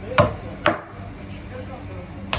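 Long butcher's knife chopping through a large fish on a plastic cutting board: two sharp chops about half a second apart in the first second.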